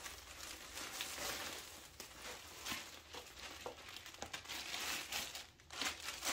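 Clear plastic packaging bag crinkling and rustling irregularly as a handbag wrapped in it is handled and lifted out, with small crackly ticks.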